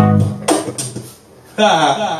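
Live band music with guitar and bass stopping about half a second in, followed by shouted voices.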